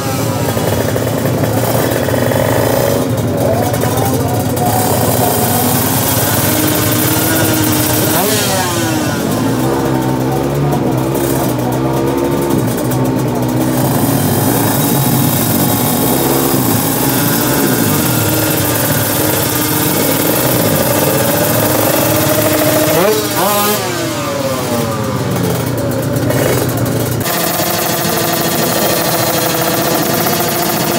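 Several drag-racing motorcycle engines revving at the start line, their pitches rising and falling over one another. There are quick sweeping revs about a third of the way in and again a few seconds from the end.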